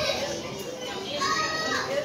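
Children's voices and chatter, with one higher-pitched voice held briefly in the second half.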